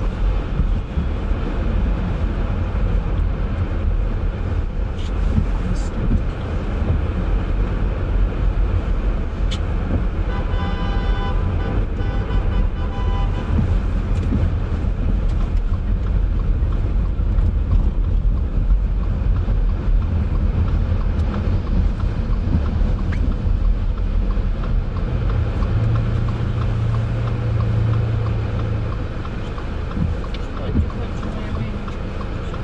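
Steady road noise of a car driving through city traffic: low engine and tyre rumble with a hiss from tyres on wet pavement. About ten seconds in, a held, pitched sound with several overtones rings for about three seconds, and a steady low hum rises near the end.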